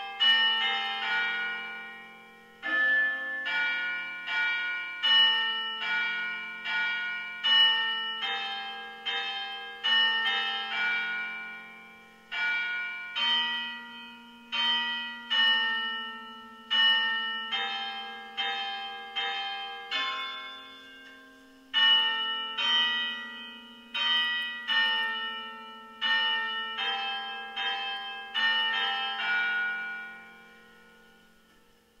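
Church bells pealing: several bells of different pitch struck one after another a few times a second, each ringing on under the next, in repeating rounds with brief pauses between them.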